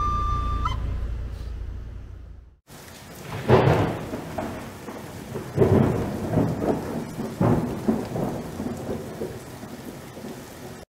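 A held flute note from a busker's bamboo flute ends within the first second over a low street rumble that fades out. Then steady rain with rolling thunder begins: several rumbles swell and die away, the loudest about a third of the way in.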